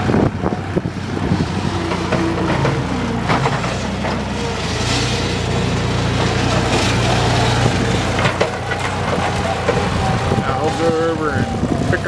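Tractor engine running steadily at idle.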